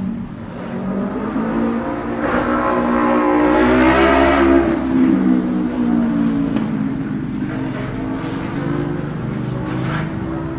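Street traffic: a motor vehicle's engine passes close by, getting louder to a peak about four seconds in and then fading, over the steady hum of other engines.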